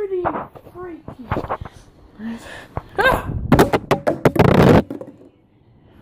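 A person's voice in short exclamations and a rising yelp about three seconds in, mixed with loud knocks and rubbing from a phone being handled; it drops to quiet shortly before the end.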